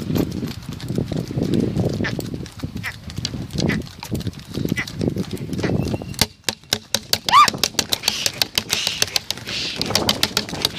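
A pair of bullocks pulling a rekla racing cart at a trot, their hooves clopping rapidly on asphalt over the rumble of the cart and wind on the microphone. About seven seconds in, a short whistle-like call rises and falls.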